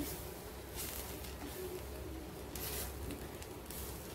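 Silicone spatula stirring and scraping dry flour through butter in a nonstick frying pan, soft repeated strokes, as the flour is roasted for a roux.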